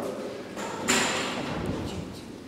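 A congregation moving about in a large hall: shuffling and stirring, with one sharp knock about a second in.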